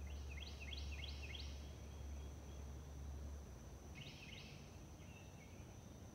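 Woodland ambience: a songbird sings a quick series of about five rising notes, then two more about four seconds in, over a steady high-pitched insect drone. A low rumble runs under the first half.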